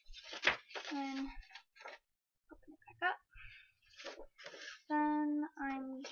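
A girl's voice, unclear and partly on a held, level pitch near the end, with the rustle of construction paper being handled in between.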